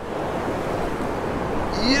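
Foamy surf washing over the sand in the shallows: a steady rush of water.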